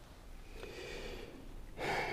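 A man breathing close to a microphone: a faint breath, then a louder intake of breath near the end.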